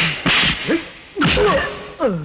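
Film fight sound effects: about three loud punch hits with swishes in quick succession, with short, falling cries from the men between them.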